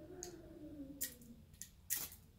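A refillable permanent match being struck against its flint striker bar: four short, sharp scratches about half a second apart as she tries to get it to light.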